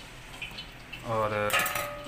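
A metal kitchen utensil clinks against a plate once, about one and a half seconds in, with a short metallic ring.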